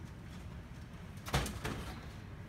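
Two sharp knocks about a third of a second apart, a little over a second in, from parts of a partly disassembled laser printer being handled.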